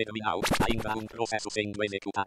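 The GNOME Orca screen reader's synthesized voice reading out the 'close this terminal?' confirmation dialog, with a brief bright sound about half a second in.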